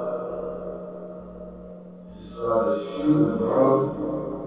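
Spirit box output played through an amplified, reverb-laden portal speaker: chopped, echoing snatches of radio voices over a steady low hum, swelling louder about two seconds in. The uploader reads the fragments as "They just pulled up!" and "Just started shooting bro...".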